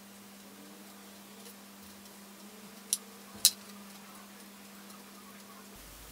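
Low steady hum with a few faint clicks, and two sharper clicks near the middle about half a second apart, from hands picking dried chamomile buds out of a glass jar.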